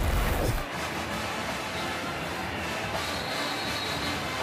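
ESPN broadcast transition sting: a deep boom at the start, then a steady, even wash of sound.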